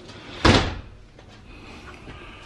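Metal-framed glass shower door shutting with a single sharp bang about half a second in, followed by a few faint clicks.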